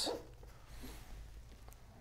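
Quiet room tone with a steady low hum and faint handling of a small paper flower rolled between the fingers.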